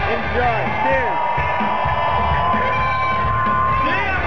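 Live band music played loud, with one long held high note from about a second in until the end.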